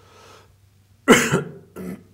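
A person coughing: one loud cough about a second in, then a shorter one just before the end.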